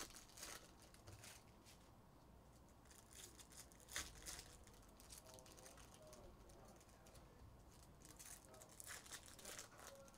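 Faint rustling and crinkling of Topps Chrome trading cards and foil pack wrappers being handled, in short scattered bursts, with a sharper crinkle about four seconds in.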